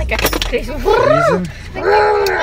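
A brief metallic jangle at the start, then a person's voice rising and falling in pitch about a second in, in a laugh or exclamation.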